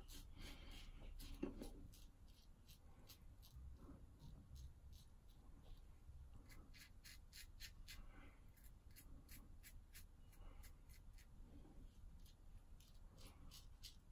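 Faint scratching of a Gillette Super Speed double-edge safety razor cutting through lathered stubble in many short strokes, on the last pass of a wet shave.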